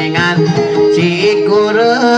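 Dayunday song: a voice singing a bending, ornamented melody with heavy vibrato over a plucked guitar accompaniment.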